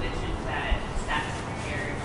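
A reporter's distant, indistinct voice asking a question off-microphone.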